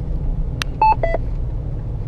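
Steady low engine and road rumble inside a Jeep's cabin. About half a second in comes a short click, then a quick two-note electronic chime, the second note lower: the navigation alert that comes just before the spoken arrival announcement.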